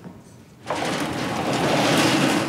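A large metal folding garage door rattling and rumbling as it is yanked at, starting suddenly about two-thirds of a second in and growing louder.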